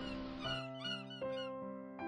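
Soft instrumental background music, with a flurry of gull calls over it during the first second and a half.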